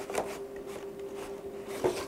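Cardboard router box being opened and its packaging handled: light rubbing and scraping, with a short knock about a quarter of a second in and another near the end.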